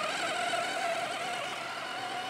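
Battery-powered Severin multi-chopper running, its blade spinning through raw chicken, egg and salt to grind it to a paste: a steady high motor whine with a whir of chopping underneath.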